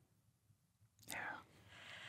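Near silence, then a quiet spoken "yeah" about a second in.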